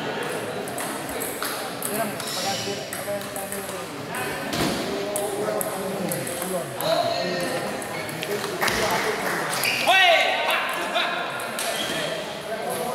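Table tennis balls clicking off paddles and the table in quick, irregular taps, with talk from players and onlookers and a shout about ten seconds in, in a large hall.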